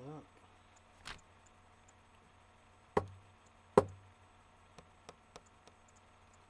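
A few sharp knocks on something hard: a lighter one about a second in, then two loud ones less than a second apart in the middle, followed by several faint ticks.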